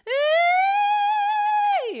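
A woman sings one high note in a 'cry' mix quality, not belt: she scoops up into it, holds it steady, and drops off sharply near the end. It is really not that loud and sounds loud only because the note is so high.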